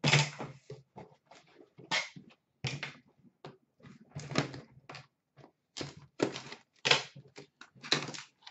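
Cardboard case and boxed hockey cards being handled and unpacked: an irregular string of knocks, scrapes and rustles, with a thump at the very start.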